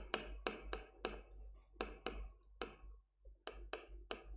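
Marker pen writing on a board: a run of short, irregular taps and strokes, each pen stroke a brief sharp click, fairly faint.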